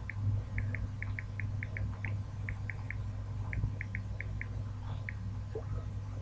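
A run of short, high chirps, often in pairs, about twenty of them over the first five seconds, above a steady low electrical hum.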